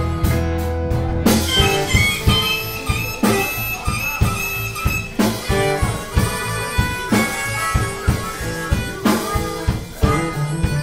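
Live band playing with a harmonica solo, amplified through a vocal microphone, over guitar, bass and a drum kit keeping a steady beat.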